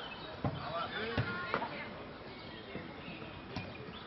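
Faustball rally: the ball thuds sharply three times in the first two seconds and once more near the end as players strike it, with short shouted calls from the players between the hits.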